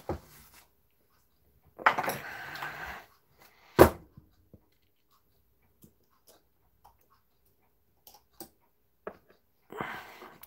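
Brass clock movement being handled and worked with a tool during disassembly: a brief scuffing noise about two seconds in, one sharp knock just before the four-second mark, then a few small scattered clicks of metal parts.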